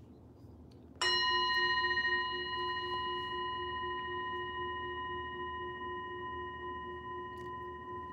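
A singing bowl struck once about a second in, ringing with a low tone and several higher overtones that fade slowly.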